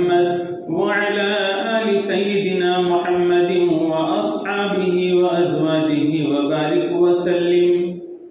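A man's voice chanting a melodic Islamic recitation in long, drawn-out held phrases, with short breaths about half a second and four and a half seconds in. The chanting ends near the close.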